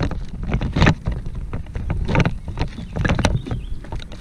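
Wind rumbling on the microphone while choppy water slaps against the kayak's hull in irregular short knocks, several a second.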